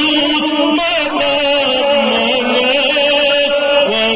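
A man's solo voice chanting a Kashmiri naat, a devotional poem, in long drawn-out held notes with a slight waver, amplified through a microphone.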